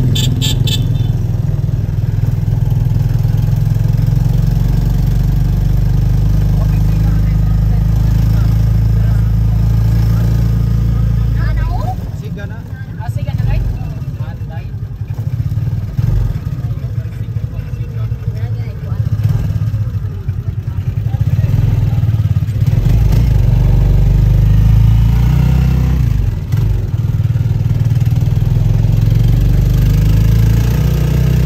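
Steady low engine and road rumble of a moving vehicle, heard from on board. It eases off for several seconds in the middle, then builds back up, with a brief high pipping sound right at the start.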